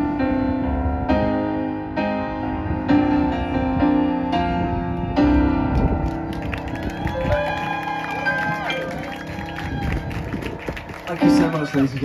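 Roland RD-700SX stage piano playing the closing chords of a song through the PA, each chord struck and held. From about six seconds in, audience clapping and cheering take over. A man starts to speak at the very end.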